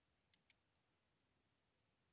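Near silence broken by two faint, short mouse clicks close together, about a third and half a second in.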